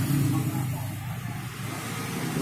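A steady low background hum under a hiss of room noise, dipping slightly in the middle.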